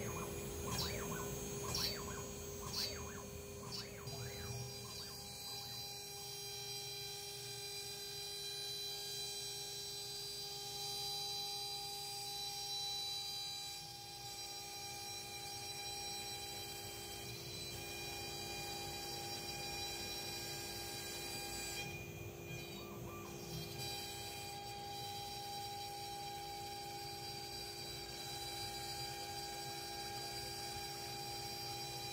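CNC router spindle running with a steady high whine, with a few short knocks in the first three seconds.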